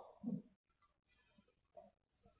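A man's voice trails off briefly at the start, then near silence: faint room tone with a couple of tiny ticks.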